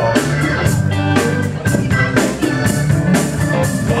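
Live rock band playing an instrumental passage with electric guitars, bass and drum kit over a steady beat.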